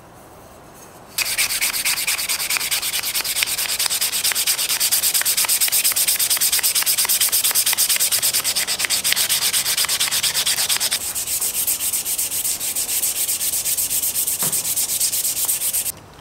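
180-grit sandpaper rubbed by hand along a brass pump tube in quick, even back-and-forth strokes, starting about a second in. The strokes turn somewhat duller about eleven seconds in.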